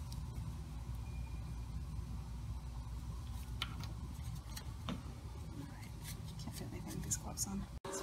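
A steady low room hum with a few faint clicks and light knocks, a little more frequent near the end.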